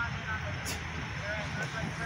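Low, steady rumble of a car engine idling, with faint, scattered voices in the background.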